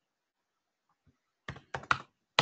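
Silence for over a second, then a quick run of four or five computer keyboard clicks near the end.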